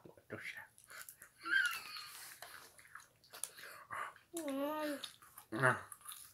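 A child eating sweet popcorn, with small crunching clicks and a brief high squeak about one and a half seconds in. She gives a wavering hummed 'mmm' about two-thirds of the way through and a short 'uh' near the end.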